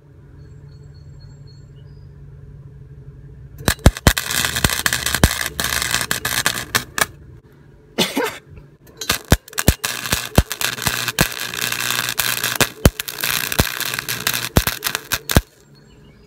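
Flux-core wire-feed welder arc crackling and spitting on a steel pipe in a first-time welder's uneven runs: a stretch starting about four seconds in, a short break, then a longer stretch from about nine seconds in that stops just before the end.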